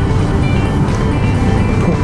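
Background music over a Kawasaki Z900RS's inline-four engine running steadily at a cruise, with wind and road noise.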